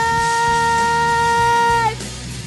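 A female singer holding one long, steady sung note into a microphone. The note cuts off just before the end, over a backing track.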